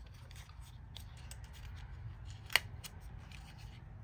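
Fingers handling a small paperboard cosmetics box, closing its end flap: soft scraping and light ticks of the cardboard, with one sharp click about two and a half seconds in.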